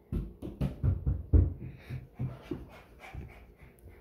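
A child's quick footsteps running across a wooden floor: a string of light, uneven thumps, strongest in the first second or so and then fading.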